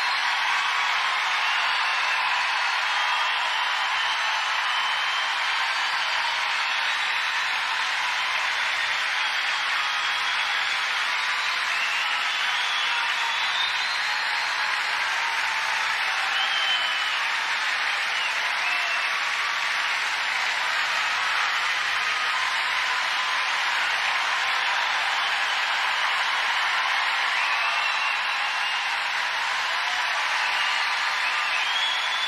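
Large concert audience applauding steadily and continuously.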